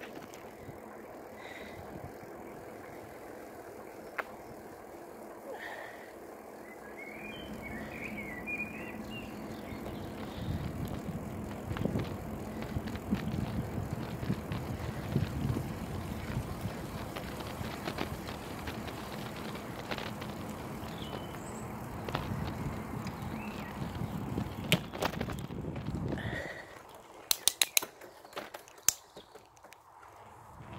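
Bicycle ride on tarmac: steady tyre and wind noise that grows louder about a quarter of the way in and holds, then drops suddenly near the end. After the drop come a few sharp clicks.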